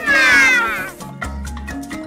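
A child's high-pitched squealing call through the first second, sliding down in pitch, over background music with a bass line and clicking percussion that carries on alone after it.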